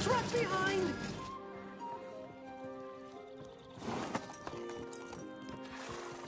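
A horse whinnying near the start, with hoofbeats, over orchestral background music.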